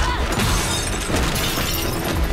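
Glass shattering: a sudden crash, then a shower of breaking glass that dies away over about a second.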